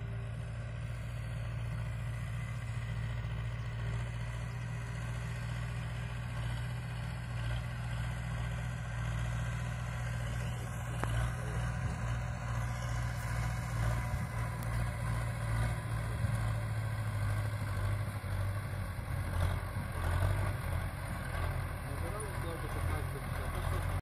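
MTZ (Belarus) tractor's diesel engine running steadily while it pulls a fertiliser spreader across the field. It grows louder in the second half as the tractor comes closer.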